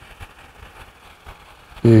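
Faint steady hiss of an electric fan running, with a few soft clicks in the first half second.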